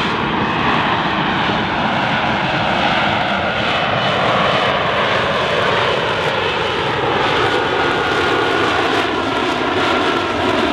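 F-35B Lightning II in short-takeoff/vertical-landing hover mode, its F135 jet engine and shaft-driven lift fan running. It makes a loud, steady jet roar, with whining tones that slowly fall in pitch as the jet comes closer.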